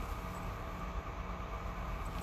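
Steady background hum and hiss of room noise, with no distinct event standing out.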